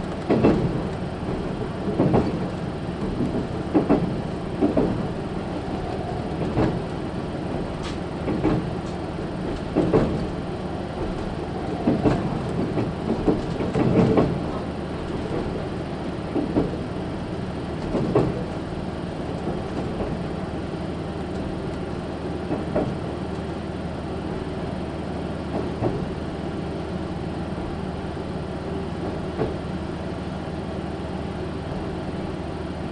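Interior of a JR Shikoku KiHa 185-series diesel railcar on the move: a steady running rumble with wheels clacking over rail joints, at first about every two seconds, then further apart and fainter as the train slows to stop at a station.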